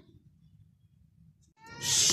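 Quiet room tone, then about one and a half seconds in a brief, loud, high-pitched cry with a stack of overtones.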